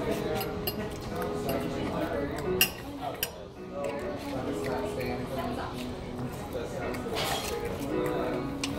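Metal fork clinking against a plate while eating, a few sharp clinks standing out, over steady restaurant background music and voices.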